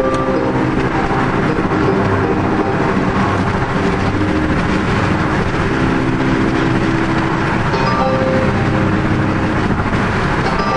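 Steady road and tyre noise of a car cruising at freeway speed, heard from inside the cabin, with a few brief steady tones coming and going.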